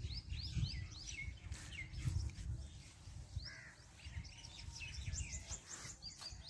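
Birds calling in quick series of short, falling chirps, with a low rumble underneath.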